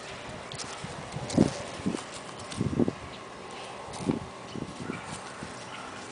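Two beagle puppies play-fighting, giving a few short, low grunts and growls. The loudest is about a second and a half in, with a cluster near the three-second mark and another about four seconds in.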